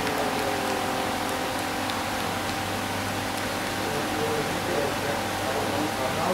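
Steady outdoor background hiss with a faint, even hum, and distant, indistinct voices from the field.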